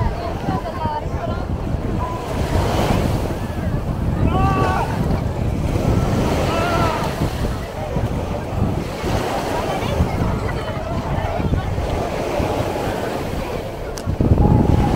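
Small waves washing onto a sandy shore, with wind rumbling on the microphone. Voices call out now and then, most clearly about four and a half and six and a half seconds in.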